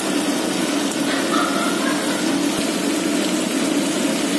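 Capsicum and onion frying in a wok over a gas burner: a steady sizzling hiss over a continuous low hum.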